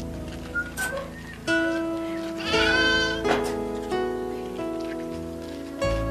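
Background music of held, sustained notes, with a goat bleating once, wavering, about halfway through.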